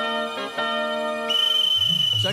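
Referee's whistle blown in one long, steady blast starting a little past halfway, signalling the start of play in a kabaddi match. Soft sustained keyboard music plays underneath and before it.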